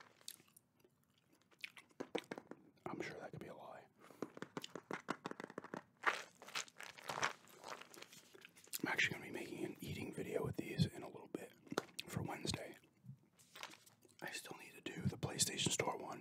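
Close-miked gum chewing with wet mouth clicks, mixed with a jar of dry roasted peanuts being handled in front of the microphone. Sharp clicks and knocks come sparsely at first and are busiest in the middle.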